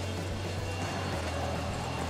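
Wheeled luggage trolley loaded with suitcases rolling across a hotel lobby floor, a steady low rumble.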